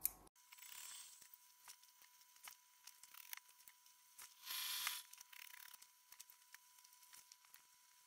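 Quiet handling sounds of a steam iron pressing cotton gingham: faint scattered taps and rubs, with one short hiss of about half a second a little past the middle.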